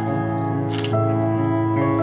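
Background music with sustained notes, and a camera shutter click about three-quarters of a second in.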